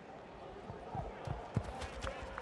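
A football being kicked on the pitch: a few dull thuds in the second half, the sharpest about a second and a half in, with players' voices calling out.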